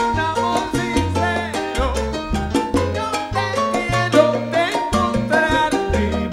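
Live salsa band playing an instrumental passage, with upright bass notes and steady percussion under the melody instruments.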